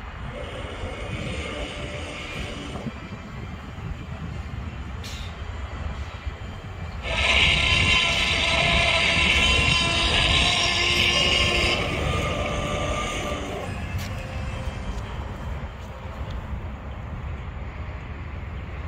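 Train horn sounding one long, loud blast about seven seconds in. It holds a steady chord of several tones for about five seconds, then fades, over a continuous low outdoor rumble.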